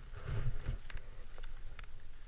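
Skis sliding through soft snow, a brief swish swelling in the first second, over a steady low rumble of wind buffeting a helmet-mounted camera. A few light, sharp clicks in the second half.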